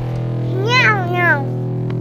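A domestic cat gives one drawn-out meow, rising and then falling in pitch, about half a second in, over steady background music.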